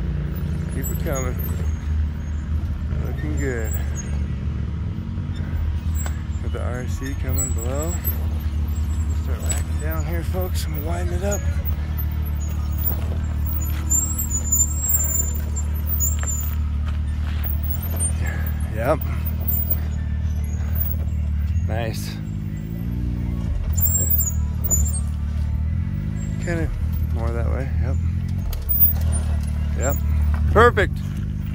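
Can-Am Maverick X3 side-by-side engine running steadily at low revs as the machine crawls down over rocks, a low drone that drops away briefly about 22 seconds in and then picks back up. Faint voices talk underneath.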